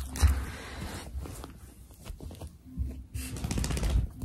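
Rustling of bedding and blankets close to the microphone, with scattered low thumps as a small dog moves about on the bed.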